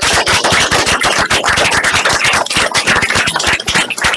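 Audience applauding, with loud, dense clapping.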